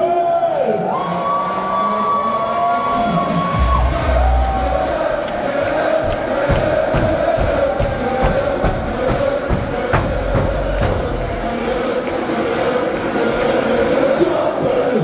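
Ballermann party schlager played live over a big PA: held notes at first, then a heavy bass drum beat comes in about four seconds in, with the crowd cheering along.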